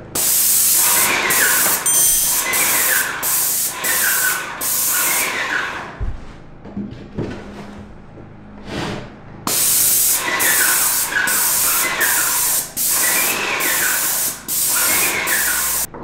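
Paint spray gun spraying wall paint onto drywall, a loud hiss coming in short bursts as the trigger is pulled and released. About five seconds in the spraying stops for roughly four seconds, then the bursts start again.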